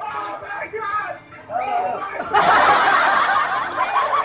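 Voices and snickering laughter over background music, with a louder, denser clamour of voices setting in about two seconds in.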